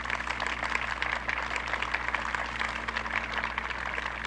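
Audience applauding: a dense, even patter of many hands clapping, over a steady low hum from the old recording.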